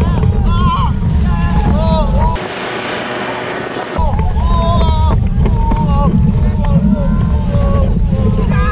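Heavy wind buffeting the microphone and rushing water as an inflatable tube is towed fast across a lake, with riders yelling short cries over and over. About two and a half seconds in, a hiss of about a second and a half covers the rumble, then the wind and cries return.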